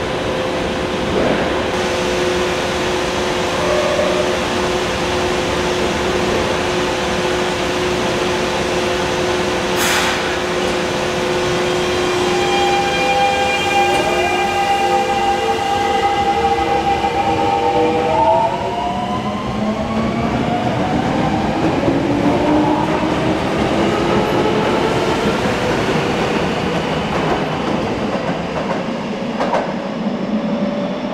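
Electric commuter train with VVVF inverter traction pulling out of a station: a steady hum while it stands, a sharp hiss about a third of the way in, then the inverter and motors whine in several tones that rise in pitch as it accelerates away.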